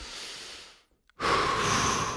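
A deep breath taken on cue into a close microphone: a quieter inhale lasting under a second, a brief pause, then a louder, longer exhale of about a second and a half that fades away.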